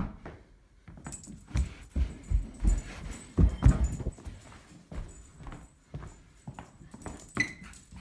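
A small dog making play noises, amid irregular thumps and scuffles.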